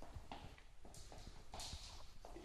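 Quiet footsteps walking on a wooden floor, a series of soft knocks with a couple of brief scuffs.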